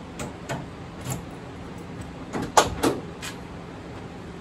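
Light latch clicks as the newly replaced tailgate lock on a 1986 Chevy S10 Blazer is worked. About two and a half seconds in come two loud metal clunks, a third of a second apart, as the tailgate is released and drops open.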